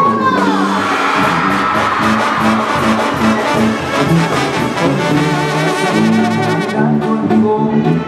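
Live Mexican banda brass section playing an instrumental passage: trumpets and trombones over tuba and drum kit, with a falling brass smear near the start.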